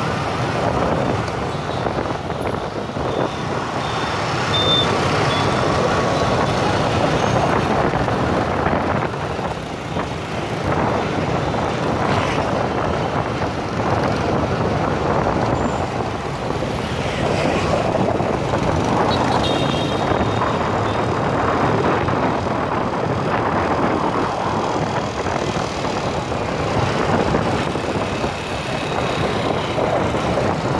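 Dense motor-scooter and car traffic heard from a moving motorbike: a steady mix of small engines and road noise, with short high-pitched beeps about two seconds in and again about twenty seconds in.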